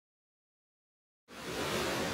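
Dead silence, then a little over a second in, surf washing onto a sandy beach starts suddenly as a steady rush of noise.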